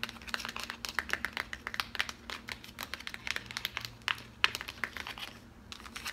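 Long acrylic fingernails tapping and scratching on the spines of a stack of hardcover books: rapid, irregular clicks with a short lull near the end.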